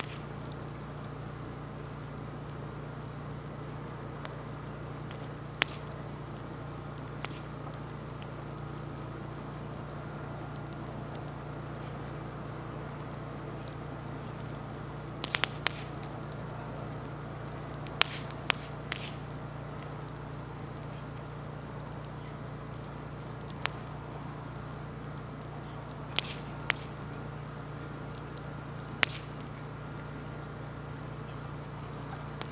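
Log bonfire burning, with a steady low rumble and sharp crackling pops every few seconds, several in quick succession about halfway through.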